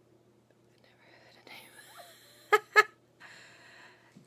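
A woman's breathy whispering and exhaling close to the microphone after a quiet first second, with two short, sharp vocal sounds in quick succession a little past the middle.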